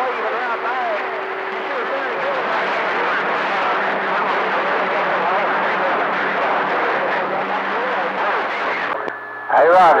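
CB radio receiver on AM channel 28 picking up a weak, distant skip transmission: a voice buried in static and too garbled to make out, with a steady low whistle under it. About nine seconds in the signal drops out, and a strong, clear station comes on talking near the end.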